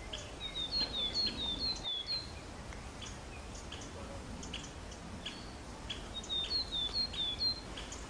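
A small songbird singing: a high two-note phrase repeated four times, about a second in and again near the end, with other short high chirps between, over a steady outdoor hiss.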